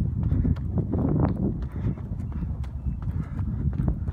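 A runner's footsteps on a dirt trail: a quick, uneven series of soft impacts over a low rumble, picked up by a phone held out at arm's length while running.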